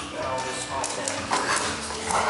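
A large dog vocalizing during play over a basketball.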